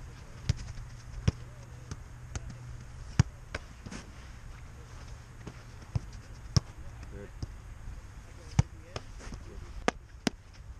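A soccer ball being volleyed and caught in goalkeeper gloves: a series of sharp thuds at irregular intervals, the loudest a little before the end. Faint voices in the background, and a low steady hum that drops away about three seconds in.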